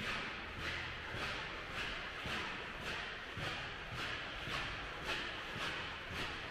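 Footsteps on a polished stone floor, the shoes squeaking with each step at a steady walking pace of nearly two steps a second.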